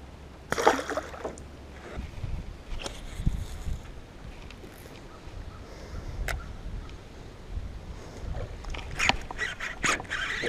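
A splash about half a second in as a bass is let go into the water beside an aluminum jon boat, then low rumbling thuds and a few sharp clicks from handling the boat and a baitcasting rod and reel.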